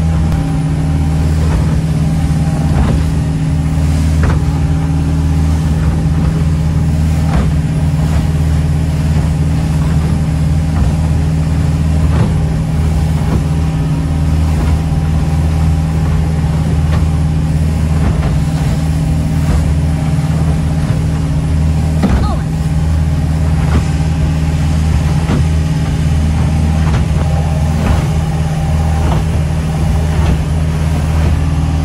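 Boat engine droning steadily at cruising speed, heard from inside the enclosed cabin, with the rush of water along the hull. Now and then a short thud as the hull slams into the chop.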